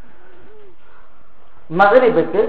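A pause in a man's talk: faint steady background with one faint low call that rises and falls in pitch early on, then the man starts speaking loudly near the end.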